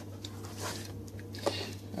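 Faint soft rustles and a light tap as fingers handle chopped coriander and green chillies on a ceramic plate, over a steady low hum.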